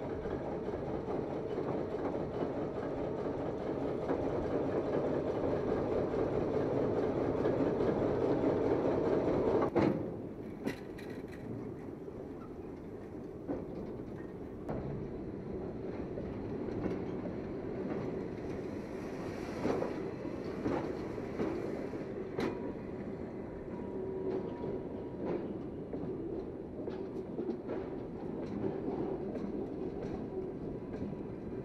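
Diesel locomotive running as it hauls a rail transporter-erector along the track, a steady rumble that cuts off abruptly about ten seconds in. After that comes a quieter steady sound of the transporter's railcar wheels rolling on the rails, with scattered sharp clicks.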